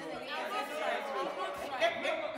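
Several young men and women talking at once in a group conversation, their voices overlapping into chatter.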